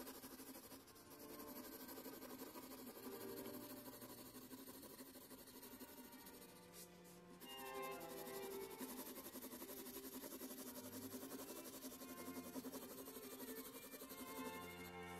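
Faint instrumental background music of slow, held notes.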